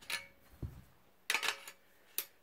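Metal shaft sections of a folding survival shovel clicking and knocking together as a knife insert is slid down into one of them: a light click at the start, a dull knock about half a second in, then a quick cluster of sharp metallic clicks with a short ring.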